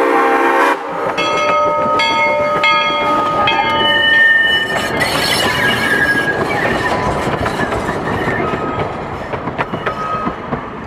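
A steam locomotive's whistle blast cuts off about a second in. A two-foot-gauge steam train then runs close by, its wheels clicking over rail joints about once every three-quarters of a second with thin ringing squeals. The sound slowly fades toward the end.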